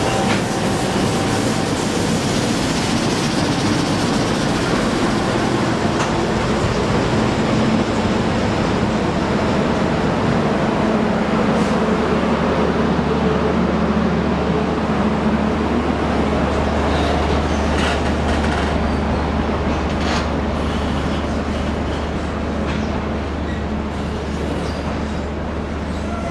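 A long passenger train rolls slowly into the platform. A diesel locomotive's engine is heard alongside at first, giving way to the steady rumble of stainless-steel carriages running past, with occasional wheel clicks.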